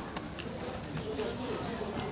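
Footsteps of several people on a hard pebble-mosaic path, short sharp taps, with people talking in the background.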